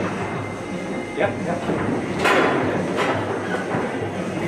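Rosengart foosball table in play: sharp clacks of the ball being struck by the plastic men and the rods knocking, the loudest a little past two seconds in, over background chatter in a hall.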